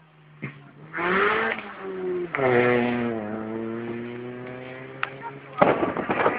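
Rally car engine driven hard through a corner: the revs climb, drop sharply at a gear change about two seconds in, then the note slowly falls as the car pulls away. Near the end a sudden loud burst of rough noise covers it.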